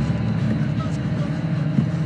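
A steady, low rumbling drone from a horror film's soundtrack, the score under a Chucky close-up.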